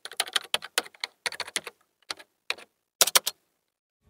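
Computer keyboard keystrokes typing in a quick, irregular run of clicks, with a louder cluster of fast keypresses about three seconds in before they stop.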